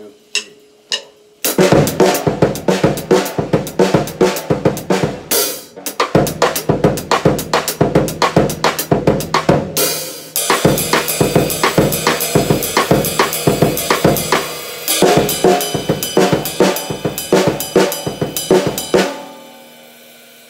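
Acoustic drum kit playing a linear funk groove of eighth notes grouped three plus five: hi-hat, snare and bass drum strokes, one at a time with no two together. It starts about a second and a half in and stops just before the end. About halfway through, the sound turns to a denser, brighter cymbal wash as the groove moves to another orchestration.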